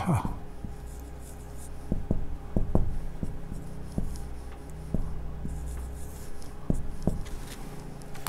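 Marker pen writing on a whiteboard: a run of short irregular strokes and ticks as the pen moves and lifts, over a faint low room hum.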